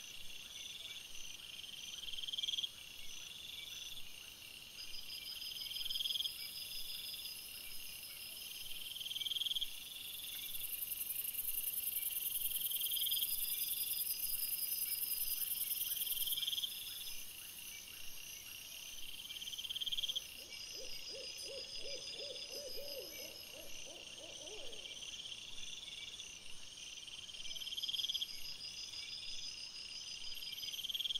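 Night chorus of crickets and bush crickets: a steady high trill, with a louder chirp repeating every second or two. From about twenty seconds in, a lower, quavering call lasts a few seconds.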